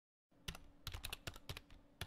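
Computer keyboard typing sound effect: quick, irregular keystroke clicks, several a second, starting a moment in.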